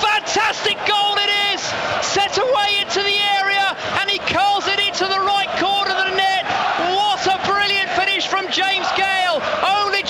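A man's voice shouting and yelling excitedly in quick, high-pitched bursts without clear words, over crowd noise from the stadium.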